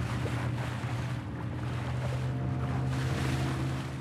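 A small fishing boat's motor running steadily at sea, a low even drone, with water rushing and splashing around the hull.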